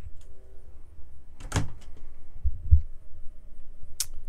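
A sliding closet door in an RV bedroom, with one sharp knock about a second and a half in as it is moved, then a couple of dull thumps, over a low rumble.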